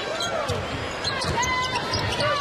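Basketball dribbled on a hardwood court during game play, a run of thuds with arena game noise around it.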